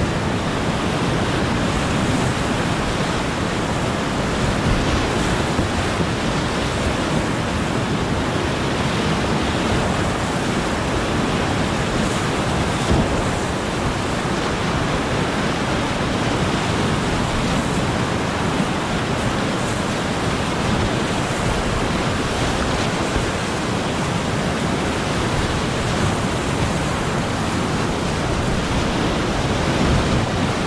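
Continuous rushing roar of grade IV whitewater rapids on an alpine river, heard from a kayak in the middle of the current, steady throughout.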